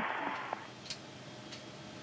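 Steady hum of the space station's cabin ventilation, with a few faint ticks.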